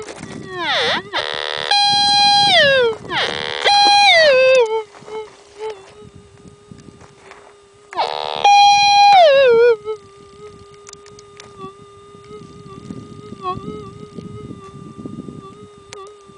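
Minelab metal detector's steady threshold hum broken by three loud target signals as dirt holding a gold nugget is tossed across the coil. Each signal jumps up in pitch, holds and slides back down into the hum. The last comes about eight seconds in.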